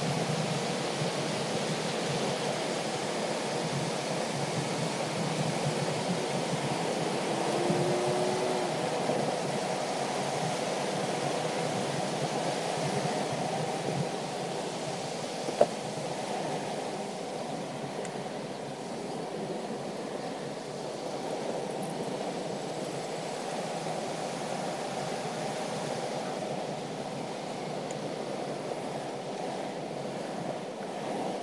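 Steady wind rushing over the microphone, with tyre and road rumble, from a fast downhill ride at around 26 mph. A single sharp knock sounds about a second after the halfway point.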